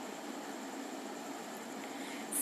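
Steady, faint hiss of background room noise, with no distinct events.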